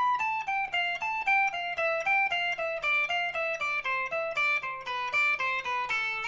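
Electric guitar on a clean tone playing a fast alternate-picked descending scale sequence in groups of four, starting on A and stepping down through A minor. The notes are even and quick, with the pitch falling overall across the run.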